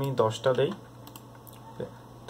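A few computer keyboard keystrokes as a number is typed into a field, with a man's short burst of speech in the first second.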